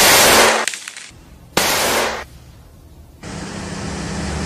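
Two pistol shots about a second and a half apart, each a sudden loud bang with a short noisy tail. Steady street traffic noise takes over near the end.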